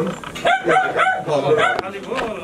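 A dog barking in a quick run of about half a dozen short barks, with people's voices around it.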